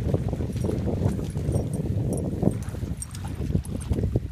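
Dogs splashing and wading through a shallow muddy puddle, irregular sloshing paw-falls in the water.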